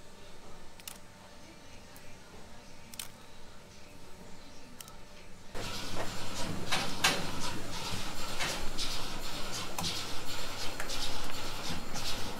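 Dairy milking-shed machinery. The first half is fairly quiet with a few isolated clicks. About halfway through, a steady low mechanical hum sets in with frequent clicks and knocks.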